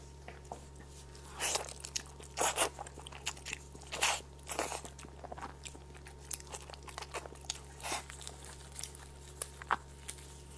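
Close-miked eating sounds of a person biting and chewing soft braised goat leg meat and skin: irregular sticky smacks and crackles, loudest about one and a half, two and a half and four seconds in.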